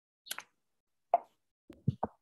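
A few brief, separate clicks and soft knocks: a quick double click near the start, a sharper knock about a second in, and low thuds near the end.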